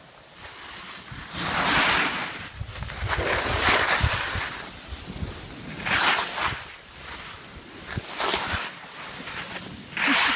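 Skis sliding and scraping over packed snow, rising in a loud hiss every two seconds or so, with wind rumbling on the microphone.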